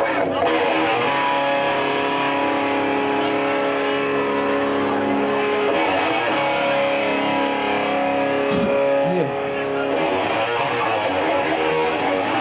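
A live rock band's electric guitars playing long, held chords; the sound breaks and shifts to a new chord about nine seconds in.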